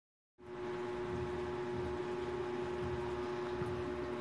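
A steady mechanical hum with one constant tone, starting just after the beginning and running on unchanged.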